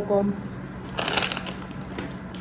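A paper napkin crumpled in the hand: a short burst of crinkling and rustling about a second in.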